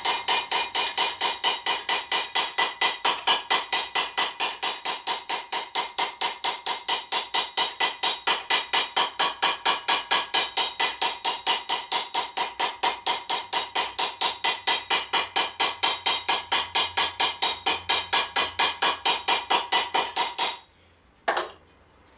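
Rounded-off scutching hammer planishing a sheet-metal vambrace from the inside over a T-bar stake: a long run of rapid, even hammer blows, several a second, each with a bright metallic ring, smoothing out dents in the armour. The blows stop about a second before the end, followed by one last tap.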